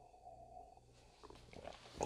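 Near silence: a faint steady low hum, with faint soft sounds of a man sipping beer from a glass and swallowing.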